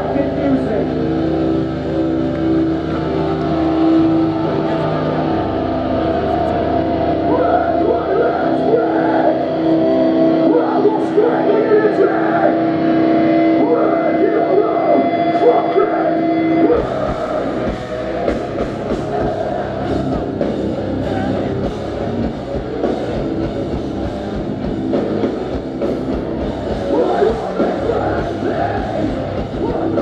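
A melodic hardcore band playing live through a club PA. For about the first seventeen seconds guitar chords ring and are held, with voices over them. Then the full band comes in with drums pounding.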